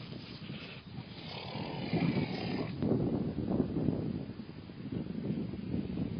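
Horses grazing at close range, cropping and chewing grass in an irregular, uneven rustle and crunch.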